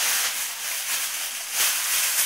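Close, loud rustling of packaging as items are rummaged through and pulled out by hand.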